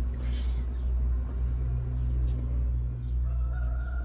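Steady low rumble inside a moving cable-car gondola, with a short rattling burst about a second in, and a single long, wavering call from outside starting near the end.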